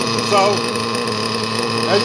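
LRP ZR.32X nitro glow engine of an RC buggy idling steadily on its first fire-up with a new carburettor, running at an even pitch throughout.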